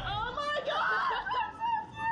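Two young women laughing together, high-pitched and breathless, on a thrill ride.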